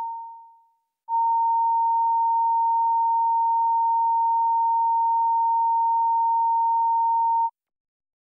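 Broadcast line-up test tone, a steady single pitch sent over the committee room's feed during the recess. It fades out in the first second, starts again about a second in, holds for about six seconds and cuts off near the end.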